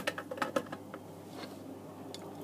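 Quiet workbench room tone with a few faint small clicks in the first half second, from the circuit board and solder being handled.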